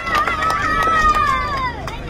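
A person's long, high, wavering held call, like a drawn-out shouted slogan, that falls away in pitch just before the end.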